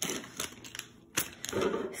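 Foil Lego minifigure blind bag crinkling as it is picked up and handled, after a couple of short sharp knocks and rustles.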